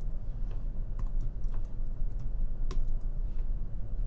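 Computer keyboard keys clicking in an irregular scatter of single keystrokes, over a low steady hum.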